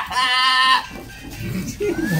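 A man laughing: one drawn-out, high-pitched laugh lasting under a second near the start.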